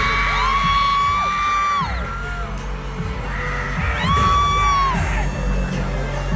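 K-pop dance track played live over an arena PA, heard from the stands: a steady low beat and two long held high notes that slide down at the end, the first lasting about a second and a half, the second about a second, starting about four seconds in. The crowd yells and whoops over it.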